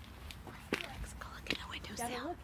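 Soft whispered voice, with several short sharp clicks and taps in between.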